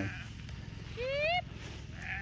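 A sheep bleating once, a short call about halfway through that rises in pitch.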